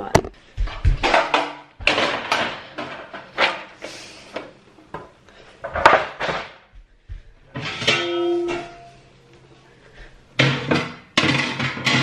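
Guitar music, in uneven strummed and plucked strokes with short pauses and a few ringing notes.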